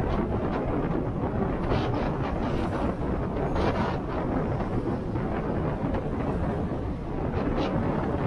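Wind buffeting the microphone of a camera on a moving vehicle: a steady low rumble, with brief hissy gusts a few times.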